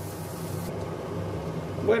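A steady low hum from kitchen appliances running, with no change in pitch; a man's voice comes in at the very end.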